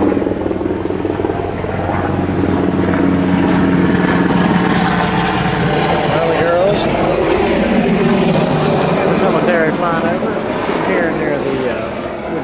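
Aircraft flying low overhead: a loud, steady engine drone with a low hum in the first few seconds, swelling into a louder rushing noise through the middle.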